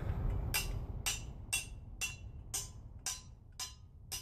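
A quenched steel AK receiver being tapped about eight times, roughly two taps a second, each giving a short, dull clink rather than a bell-like ring. The dull note is taken as a sign that the heat treatment did not harden the steel.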